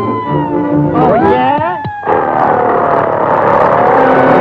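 Early-1930s cartoon soundtrack: orchestral music, then a warbling sound effect that swoops up and down and drops in a quick falling slide. About two seconds in a sudden loud rushing noise, like a roar or crash, takes over under a long, slowly falling tone.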